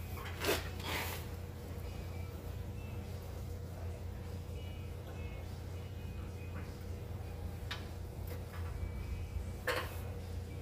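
A few sharp metallic clinks of a socket, bolt and hand tools against a steel car frame, two close together about half a second in and a louder one near the end, over a steady low hum.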